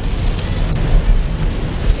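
Heavy rain on a moving car heard from inside the cabin: a steady wash of rain and tyre noise over a loud low rumble.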